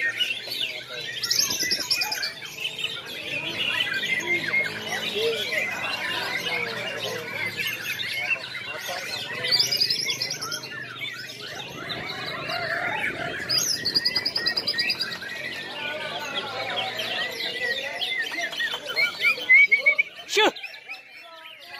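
Several caged white-rumped shamas (murai batu) singing at once in a contest round, fast varied whistled phrases overlapping.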